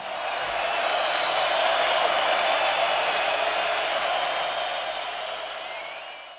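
Audience applauding after a live rock song, a steady even clatter of many hands that fades away near the end.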